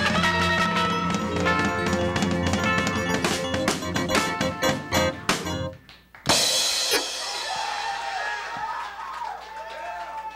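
Live band of drum kit, keyboard and electric guitar playing the end of a song: a run of sharp drum hits, a brief stop about six seconds in, then one loud final cymbal crash that rings out.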